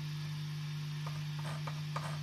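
Steady electric-guitar amplifier hum, with faint irregular clicks from about a second in as the guitar's tremolo bridge and whammy bar are worked up and down.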